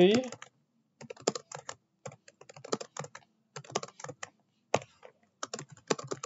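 Computer keyboard typing in short bursts of keystrokes with brief pauses between them.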